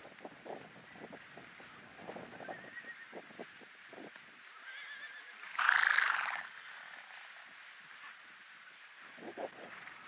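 A wild mustang neighs once, loud and about a second long, just past halfway, with a fainter high call just before it. Soft hoofbeats of the herd moving over the grass come and go around it.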